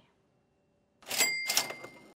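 Cash register 'ka-ching' sound effect: two quick rattling strokes about a second in over a ringing bell tone, which cuts off suddenly.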